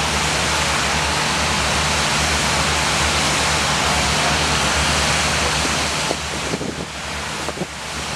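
Loud, steady rush of water from a large trailer-mounted fire monitor (jet gun) rated for over 8,000 gallons per minute, with a low steady drone beneath it. About six seconds in, the rush drops a little and turns uneven.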